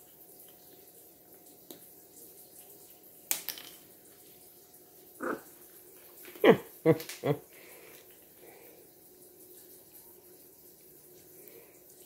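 Blue-and-gold macaw working a pecan in its foot with its beak, with one sharp crack of shell about three seconds in. About halfway through come three short voiced sounds in quick succession, over a faint steady hum.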